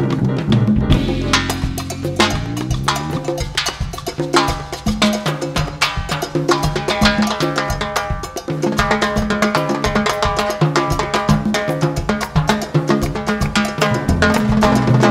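Afro-Cuban jazz orchestra playing live: a busy drum and percussion passage driving a fast Latin rhythm over sustained low pitched lines, with a gliding low figure about two seconds in.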